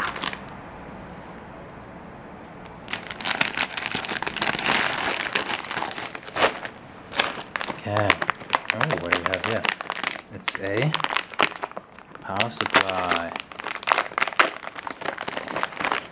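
Plastic and anti-static packaging bags crinkling and rustling as parts are handled and unwrapped. The crinkling starts about three seconds in and goes on in irregular bursts, with a few short vocal murmurs between them.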